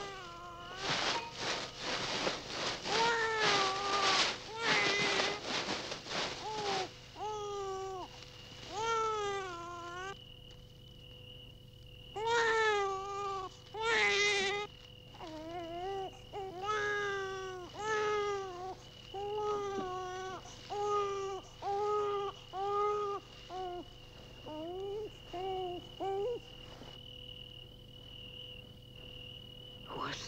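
Infant crying in a long run of wails, dense and ragged for the first several seconds, then shorter separate cries that thin out and stop a few seconds before the end. A faint steady high tone runs underneath.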